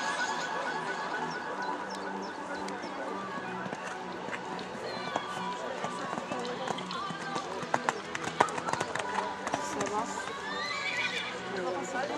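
Background voices with faint music, and a cluster of sharp knocks about eight seconds in.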